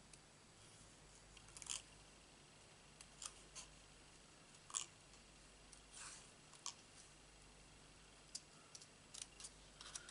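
Small scissors snipping a slip of stamped card in a dozen or so short, faint snips at an uneven pace, cutting closely round small letters.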